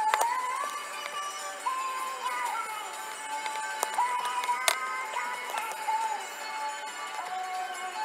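A pop song with a sung melody playing on a car's FM radio, sounding thin with little bass, with two brief knocks about four and five seconds in.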